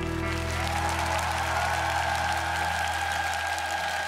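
Studio audience applauding over the song's final held chord, which sustains without stopping.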